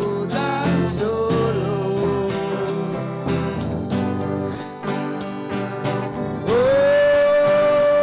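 Live band playing an instrumental break of a bluesy song, led by accordion with long held notes. A louder sustained note comes in about six and a half seconds in and is held.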